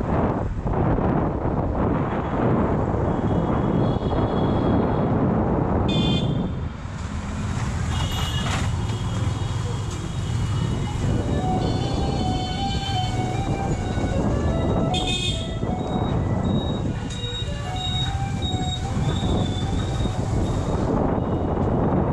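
Motorcycle riding through city traffic: engine and road noise with wind buffeting the bike-mounted camera's microphone. Short horn toots from surrounding traffic come through now and then, mostly in the second half, and there is a brief loud burst of noise about two-thirds of the way in.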